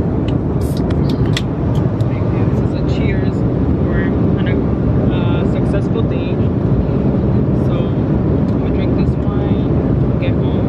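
Steady low roar of airliner cabin noise from the engines and airflow, with faint voices heard over it a few seconds in.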